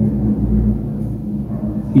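Low, steady background music filling a pause in speech, with a deep rumble about half a second in.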